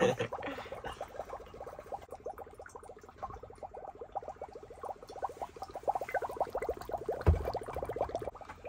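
Dry ice bubbling in a mug of warm water: a rapid, continuous run of small pops and gurgles as the carbon dioxide gas boils off. About seven seconds in there is a single low thump.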